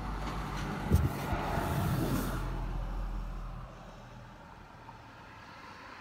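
Low steady hum of an idling car heard inside the cabin, with a sharp thump about a second in and a rustle after it; the hum drops away a little after halfway, leaving quieter cabin noise.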